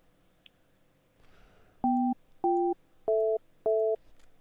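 Four short two-note telephone keypad beeps, evenly spaced about 0.6 s apart, heard through the call's phone line. The first two share a high note and the last two are alike.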